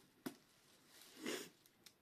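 Near quiet: a faint single click near the start, then a short soft hiss just past one second.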